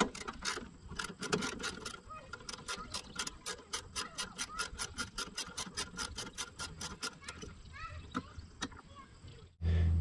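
A socket ratchet clicking in a quick even run, about six clicks a second, as a housing bolt is backed out, with a few single clicks before the run.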